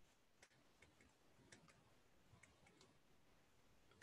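Near silence, with a few faint ticks of a stylus tapping on a touchscreen while handwriting.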